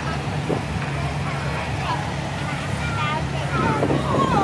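Cars idling at a drag strip start line, a steady low engine drone, with faint voices over it.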